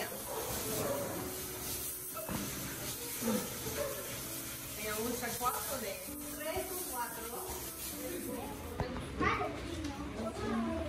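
Indistinct chatter of several adults and children talking over one another in a room, with no single voice clear.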